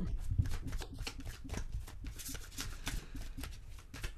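A tarot deck being shuffled by hand: a quick, irregular run of soft card flicks and slaps.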